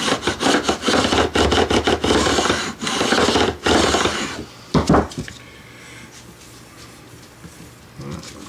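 A wooden-bodied fret end file being drawn back and forth along the metal fret ends of a guitar neck, filing them flush at a 90-degree angle after a fret replacement. It makes a quick run of rasping strokes, with one last loud stroke about five seconds in, then stops.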